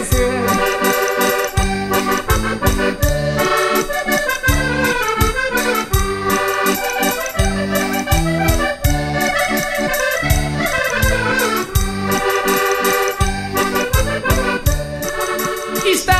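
Instrumental break in a Portuguese folk song: a concertina (diatonic button accordion) plays the melody over a pulsing bass accompaniment, with no singing.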